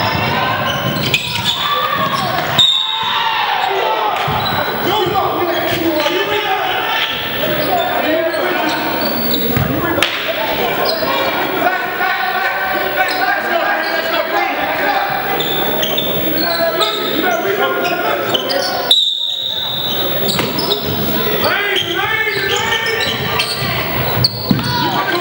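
Indoor basketball game: a ball bouncing on the hardwood court amid players' and onlookers' voices, echoing in a large gym.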